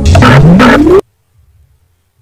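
Loud whoosh sound effect lasting about a second, with a tone rising steadily in pitch, that cuts off suddenly. It marks the end of a quiz countdown timer, as time runs out before the answer is revealed.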